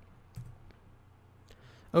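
A few short, isolated computer keyboard clicks over quiet room tone, as a command is entered at the keyboard. A man's voice starts right at the end.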